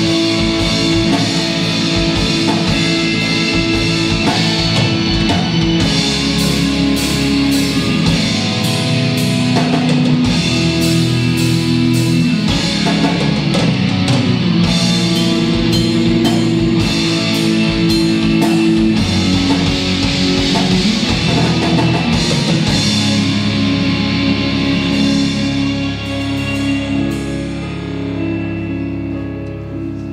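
Live progressive rock band playing: electric guitars, keyboards, bass and drum kit together. Over the last few seconds the drums fall away and the music thins and softens.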